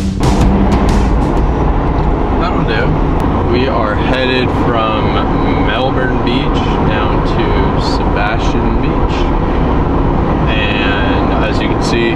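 Steady low rumble of a car's road and engine noise heard from inside the cabin while driving, with talking faintly over it.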